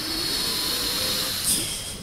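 A long, hissing in-breath drawn close to the microphone by a male Quran reciter between phrases of his recitation, swelling to its fullest about a second and a half in before fading; the deep breath taken to carry the next long sustained phrase.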